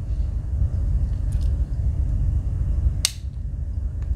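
A low steady rumble with a single sharp metallic click about three seconds in: a back-layer tool of a Victorinox Cyber Tool 41 Swiss Army knife snapping shut against its backspring.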